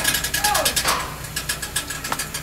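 A rapid run of sharp, ratchet-like clicks, loudest in the first second and fading away.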